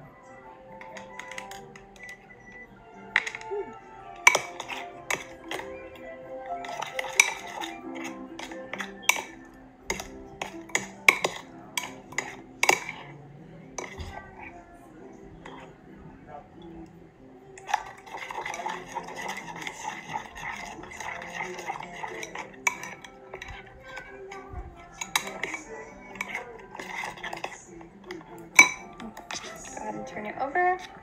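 A spoon clinking and scraping against a glass mixing bowl as thick slime is stirred, with many sharp clinks. It becomes a denser, steadier stirring noise in the second half. Background music plays underneath.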